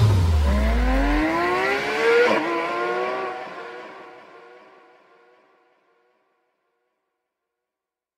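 A car engine revving, its pitch climbing in one long rise and then rising again about two seconds in, fading away by about five seconds in. A deep bass note left over from the end of the song holds for the first second.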